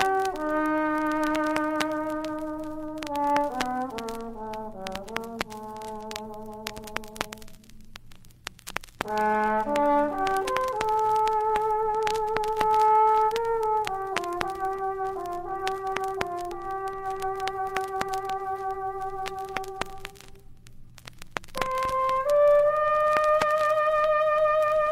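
Trombone playing a slow, lyrical melody of long held notes in phrases, with vibrato on some notes and short breaks between phrases. It is heard from an old vinyl record, with frequent small pops and clicks from the disc.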